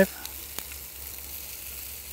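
Steady sizzling of a whole chicken roasting over hot charcoal on a rotisserie grill, its fat and olive-oil marinade frying in the drip pan below. A single faint click about half a second in.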